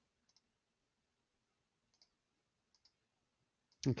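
A few faint, short computer mouse clicks in near silence, as menu items are clicked on screen.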